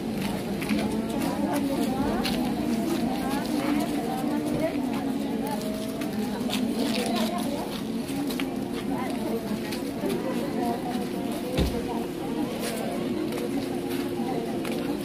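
Many women's voices talking and greeting at once: overlapping, indistinct chatter over a steady hum, with a single thump near the end.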